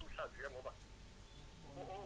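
A faint voice: brief quiet speech at the start, a pause, and speech again near the end.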